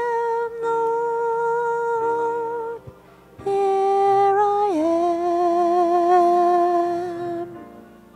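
A woman's voice holding long, slow sung notes of a worship melody, with a short break about three seconds in and a step down in pitch near the fifth second.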